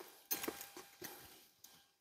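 A few faint, short clicks and light taps, spread over the first second and a half.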